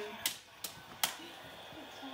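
Three short, sharp clicks about 0.4 seconds apart in the first second or so.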